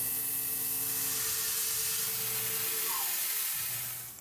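Steady hiss of coolant spraying at an end mill as a CNC mill takes a finishing contour cut in 304 stainless steel, with faint steady tones from the cut underneath. The sound fades out just before the end.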